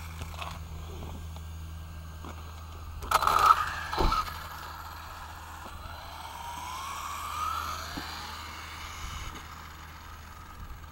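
A radio-controlled car's motor whines and rises in pitch as the car speeds up, over a steady low rumble. A burst of loud knocks and clatter comes about three seconds in.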